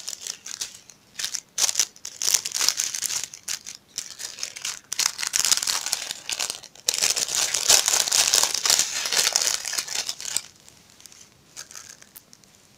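Plastic sheeting and a small plastic bag of rhinestones crinkling as they are handled, in irregular rustling bursts that are busiest in the second half and die away near the end.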